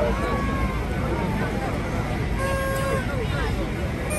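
Dense street-crowd babble: many voices talking and calling out at once over a steady low city rumble, with one held note a little past halfway.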